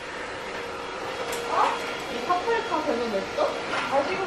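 Quiet conversational speech in a room, a few short spoken phrases, with a faint steady hum under the first half.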